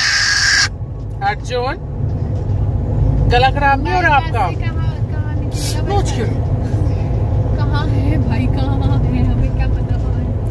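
Steady low rumble of road and engine noise inside a moving car's cabin, with a baby babbling in short high-pitched bursts on and off. A brief hissing noise comes at the very start.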